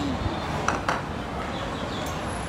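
A metal teaspoon clinking against a glass coffee mug: two quick clinks a little under a second in, over steady background noise.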